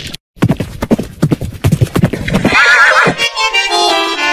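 Horse hooves galloping in quick strokes, then a horse whinnying about two and a half seconds in, as held music notes come in near the end.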